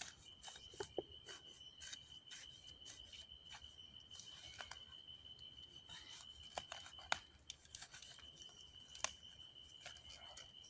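Machete blade chopping and scraping into dry soil while digging a planting hole: a series of short sharp knocks, the strongest about a second in and again around seven and nine seconds in. Behind it, a steady high chirring of insects.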